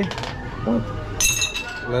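A plastic ring-toss ring striking glass bottles: one sharp, ringing clink about a second in.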